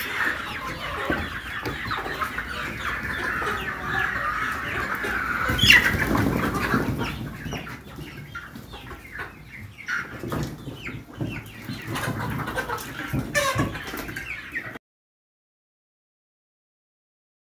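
A flock of brown laying hens clucking, a busy overlapping chorus at first, with a loud burst of noise about six seconds in. After that the clucks are fewer and quieter, among scattered clicks, and the sound cuts off abruptly shortly before the end.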